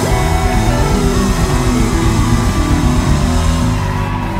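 Live gospel praise band playing loud, fast music, with the drum kit played hard and dense bass notes underneath.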